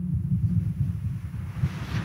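Low, unsteady background rumble, with a faint hiss growing near the end.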